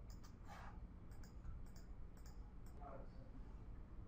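Faint small clicks, a dozen or so, irregular and often in pairs, during the first three seconds, over a low steady hum.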